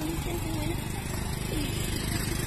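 A motorcycle engine idling close by, a steady low hum under outdoor open-air noise.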